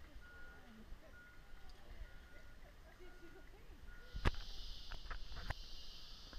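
Rainforest ambience: a short, high, steady note repeats about once a second over faint distant voices. About four seconds in, a loud, even, high hiss or buzz sets in, with a few sharp knocks.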